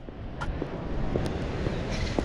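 Steady background noise of a large exhibition hall being set up: a continuous low rumble and hiss, with a sharp click about half a second in.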